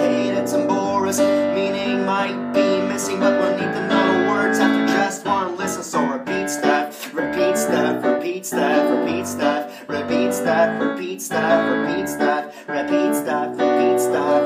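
Grand piano played with steady repeated chords, a pop-song accompaniment.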